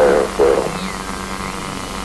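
Two short voice-like calls in the first second over a steady electrical hum and static hiss that carries on through the end.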